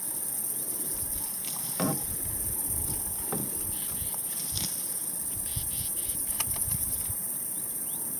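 Steady high-pitched insect chorus, with a few faint clicks and soft knocks scattered through it.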